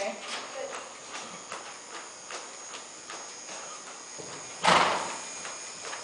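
Horse trotting on the dirt footing of an indoor arena: steady hoofbeats, about two to three a second. A short, loud burst of noise comes near the end and is the loudest sound.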